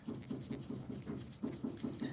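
Polishing cloth loaded with metal polish rubbed hard on the stainless steel case of a Seiko SNZG wristwatch, in quick back-and-forth scraping strokes about five a second.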